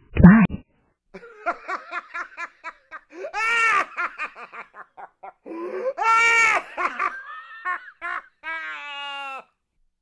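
A person laughing: a run of quick, short 'ha' pulses that swells into two louder laughs about three and a half and six seconds in, ending in a longer held note.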